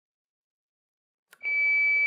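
Philips HeartStart AED switching on: a click, then a single steady high-pitched power-on beep about a second long.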